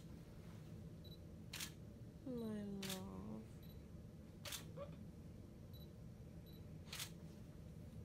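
DSLR camera shutter firing four single shots, spaced one to two and a half seconds apart.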